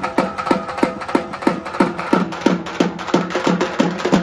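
A troupe of large double-headed drums beaten with sticks, playing a fast, driving rhythm. Deep strokes come about three a second, each sliding down in pitch, with quicker, sharp stick hits between them.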